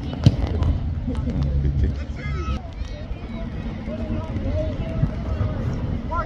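Sideline sound of a youth rugby match: scattered shouts from players and spectators over a steady low rumble, with one sharp thump just after the start.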